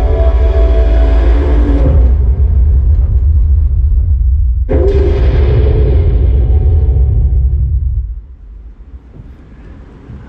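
Loud, deep rumbling film soundtrack played over the hall's speakers, with a sudden hit about five seconds in that fades out over the next three seconds, leaving the room much quieter.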